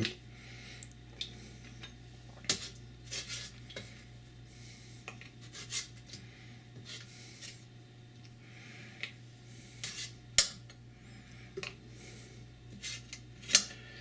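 Metal spoon clinking and scraping against a stainless steel stockpot while congealed fat is skimmed off cold soup: scattered light taps and soft scrapes, with a sharper clink about ten seconds in.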